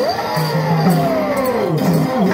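Pandari bhajana folk music played on an electronic keyboard: a long note bends quickly up and then glides slowly down in pitch, over steady repeated low notes.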